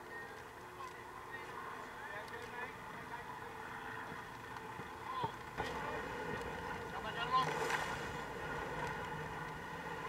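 Wind and water rushing past the hull of an ocean racing yacht sailing fast in strong wind, with faint voices of the crew on deck. The rush grows louder from about halfway through.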